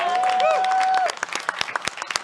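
A held voice-like call over crowd noise, then an audience applauding with many quick, sharp claps from about a second in.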